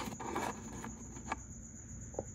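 Small plastic pieces handled and set down by hand: a few light clicks, about half a second in and again a little after a second, over a steady high-pitched whine and low hum.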